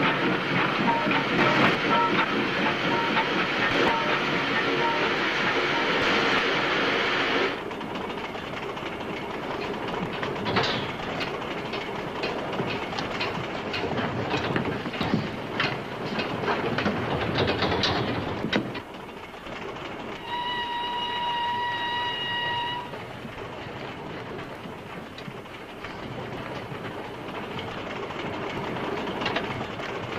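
Steam train running: a loud hissing rumble that drops suddenly to a quieter rattle of wheels clicking over rail joints. Partway through, a whistle sounds once as one steady note for about two seconds, over the continuing rumble.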